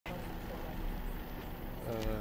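Quiet outdoor street sound: a vehicle engine running steadily with people's voices faintly in the background.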